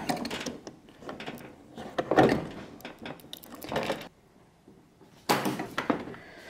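Plastic car trim and light-housing parts being worked by hand, giving several short knocks and rattles, the loudest about two seconds in. Near the end a quiet second is followed by one more clatter.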